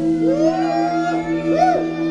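A live rock band holds a sustained chord on electric guitar and bass after the drums stop, while a lead line over it bends up and down in pitch in slow arcs.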